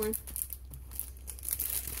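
Plastic sticker-pack packaging crinkling in short, scattered rustles as the packs are handled on the table.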